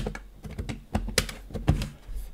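A mini PC's cover being pressed back into place by hand: a sharp click right at the start, then a run of lighter clicks and taps on the case.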